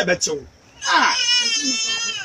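Someone crying: after a brief bit of voice, one long high-pitched wailing cry lasting over a second.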